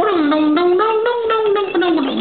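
A man singing a wordless tune, one held line of notes stepping and gliding up and down, with a brief break just before the end.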